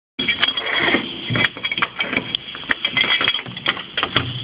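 Thin sheet-metal latch shim worked into the gap of a door against the lock's latch: rapid metallic scraping, clicking and rattling. The lock's follower is broken, so the door is being forced open from the latch side.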